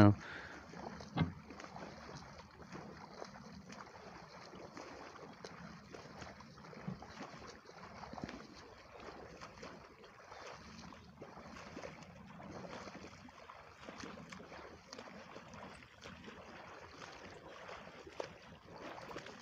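Faint waterside ambience while the float sits still, with a few small clicks and knocks, the clearest about a second in.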